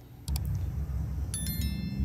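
A short click, then about a second and a half in a bright bell chime with several high ringing tones: the click-and-notification-bell sound effect of an animated subscribe button. A low rumble runs underneath.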